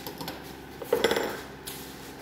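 Steel tongs and the welded steel plate gripped in them clinking together: a few light clicks, then a cluster of sharp metallic clanks with a short ring about a second in.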